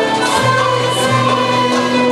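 Mixed choir of men and women singing a Turkish art music (Türk sanat müziği) song in the nihavend makam, in held, sustained notes.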